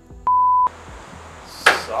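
A single steady electronic bleep, one pure tone lasting under half a second, a moment in. Near the end a short, sharp burst of a man's voice breaks in.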